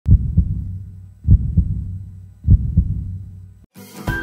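Heartbeat sound effect: three low double thumps (lub-dub) about a second and a quarter apart, over a low hum. Music begins just at the end.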